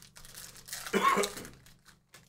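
Foil trading-card pack wrapper crinkling and tearing as it is opened by hand and the cards are pulled out. The sound is loudest about a second in.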